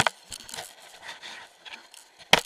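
Water rushing and slapping against a helmet camera tumbling in whitewater, with a sharp, loud knock at the start and a scatter of smaller knocks after it.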